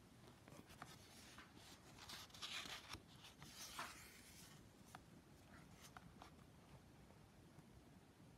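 Faint rustle of a paper sketchbook page being turned by hand: a soft swish about two to four seconds in, with a few light ticks of paper around it.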